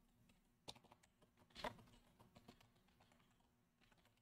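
Faint typing on a computer keyboard: a few scattered keystrokes, two of them louder than the rest.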